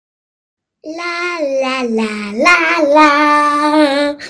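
A voice sings "la, la, la" unaccompanied, starting about a second in: three held notes, the second sliding down and the last rising back up and held longest.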